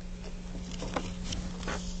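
Steady low electrical hum on the recording, with a few faint soft clicks.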